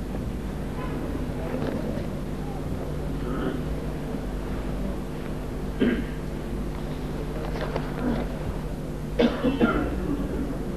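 Coughs and throat-clearing from a seated congregation in a crowded room: one cough about six seconds in and a quick cluster of coughs near the end. Under them runs low murmuring and a steady hum.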